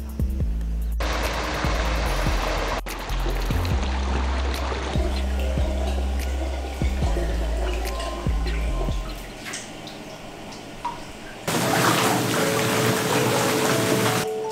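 Background music with a deep, steady bass line over running water. The bass drops away about nine seconds in, and near the end a louder, even rush of water pouring into a hot-spring bath takes over.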